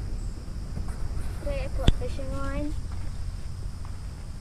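A voice speaking briefly, with a single sharp click about two seconds in, over a steady low rumble.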